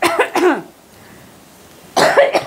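A woman coughing: a short fit of coughs at the start, then another beginning at the very end.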